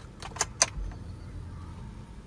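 Car key jangling and clicking in the ignition switch of a 2011 Hyundai Accent as it is turned to the on position, a few sharp clicks within the first second.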